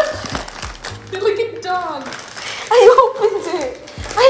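Two women laughing hard, their voices wavering up and down, loudest about three seconds in, with music playing underneath.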